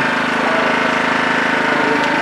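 A steady mechanical hum with an even low throb, like a small engine running without change.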